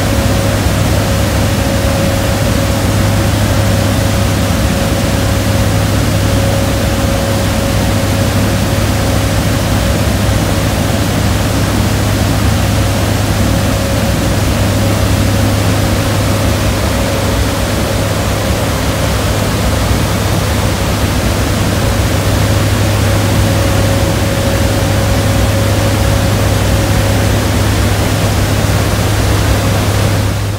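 Steady noise of a C-130's turboprop engines and rushing air inside the cargo bay with the rear ramp open in flight: a constant low drone with a faint higher whine that fades in and out.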